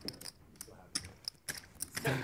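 Poker chips being handled at the table, a handful of light, irregular clicks.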